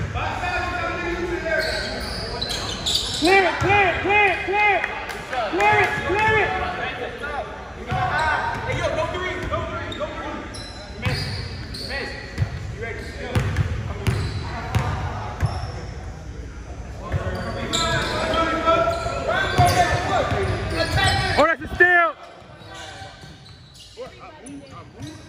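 Basketball bouncing on a hardwood gym floor as a free-throw shooter dribbles before the shot, mixed with voices calling and shouting in the gym, including a run of four short repeated calls a few seconds in. The level drops off sharply near the end.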